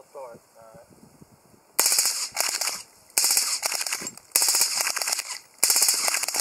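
Full-auto bursts from a suppressed Uzi with a Liberty Torch suppressor. There are four rapid strings of shots, each about a second long, the first coming about two seconds in. A faint voice comes just before them.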